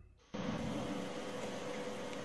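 Steady hiss with a faint steady hum, starting abruptly after a split second of silence: the background noise of a CCTV recording's audio track.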